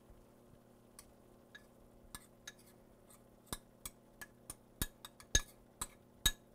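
Metal spoon clinking against a small ceramic bowl while grated pecorino romano cheese is spooned out of it: scattered light clinks, sparse at first and coming more often and louder in the second half.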